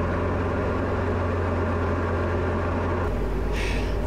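A Diamond DA40's piston engine and propeller droning steadily, heard inside the closed cockpit. The tone of the drone shifts about three seconds in.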